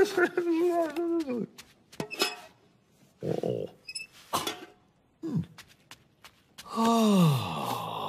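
A cartoon character's wordless vocal sounds: pitched mumbling hums at the start, scattered short clicks and a brief sniff-like burst in the middle, then a long 'aah' sigh that falls in pitch near the end.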